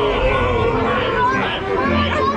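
Overlapping voices of the ride's audio-animatronic pirates: a jumble of chatter with drawn-out, sing-song lines.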